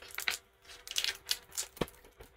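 Clear plastic packaging of a set of craft cutting dies being handled and opened: a run of short, light crinkles and clicks.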